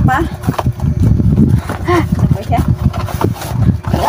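A woman talking, with a steady faint hum underneath.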